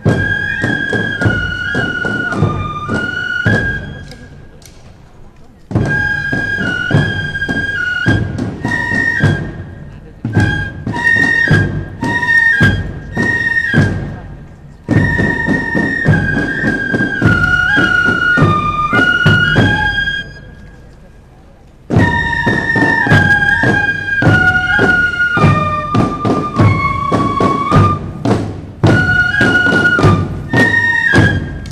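A marching fife-and-drum band playing as it passes: fifes carry a stepping melody in phrases over steady snare-drum strokes. The music drops away briefly twice, about four seconds in and again about twenty seconds in.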